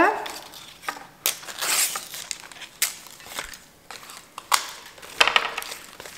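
An aspidistra leaf being torn lengthwise into strips: several short tearing scrapes with brief pauses between.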